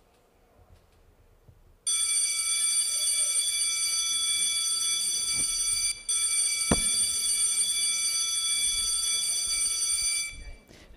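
Electronic buzzer sounding one steady, ringing high tone that starts abruptly about two seconds in and holds for about eight seconds, with a brief break midway: the chamber's signal closing a minute of silence.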